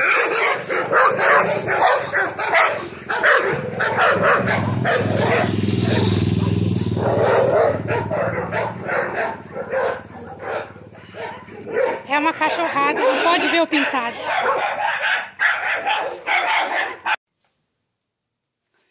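Several dogs barking again and again, with loud handling and movement noise around them. The sound cuts off suddenly near the end.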